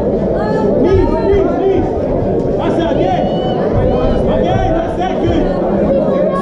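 Crowd of spectators in a large hall, many voices talking and shouting over one another without a break.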